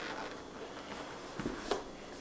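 Faint rustle of a cardboard box lid sliding up off its base, with a couple of light taps in the second half.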